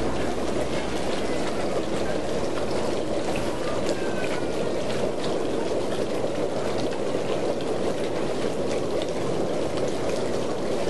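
Steady splashing and bubbling of circulating, aerated water in tanks of live seafood.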